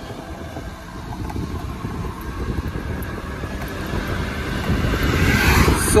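Wind rushing over the microphone and road noise from an Ola S1 Pro electric scooter accelerating toward 50 km/h, getting louder over the last couple of seconds.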